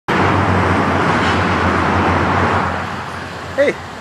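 Road traffic going by on a rain-wet road: a loud tyre hiss that fades away after about two and a half seconds. A short voice sound comes near the end.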